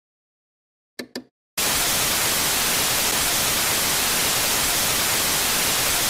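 Two short clicks about a second in, then loud, steady television static hiss starting about a second and a half in, as from an old tube TV tuned to a dead channel.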